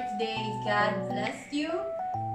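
Background music: held melody notes over a low bass note that sounds for about a second at a time.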